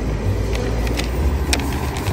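Wind rumbling on the microphone while riding a bicycle, with a few light clicks and rattles from the bike.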